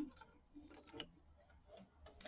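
Faint small clicks and rustling of hands changing to black thread on an embroidery machine, with a few short clicks near the start and again about a second in.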